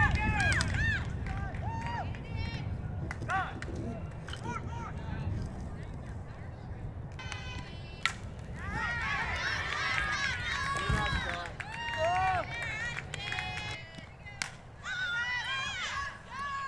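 Players and spectators shouting and cheering at a softball game. About eight seconds in, a single sharp crack of an aluminium bat hitting a softball, followed by a few seconds of louder, overlapping high-pitched cheering.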